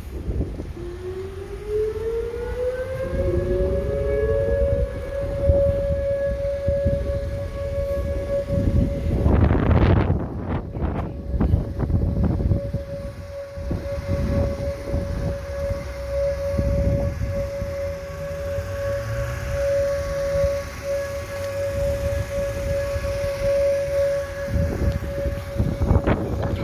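Outdoor warning siren winding up in pitch over the first few seconds, with a second rising tone joining briefly, then holding one steady tone. Wind buffets the microphone throughout, hardest about ten seconds in.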